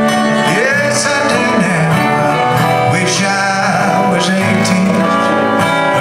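Two acoustic guitars and a mandolin playing a country song together, with steady strummed and picked notes.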